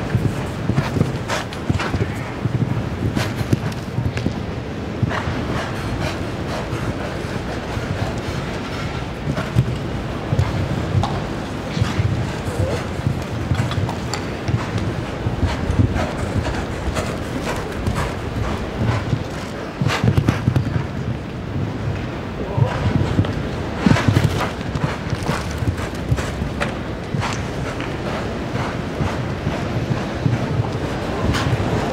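Horse's hoofbeats, a rhythm of dull thuds on soft arena footing as it canters and gallops around the course, over a constant arena background of murmur.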